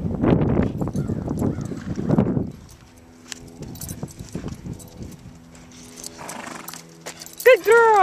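A horse's hooves thudding on dry paddock dirt as it moves off quickly, loud for about the first two and a half seconds, then only a few faint knocks. A person's 'oh' near the end.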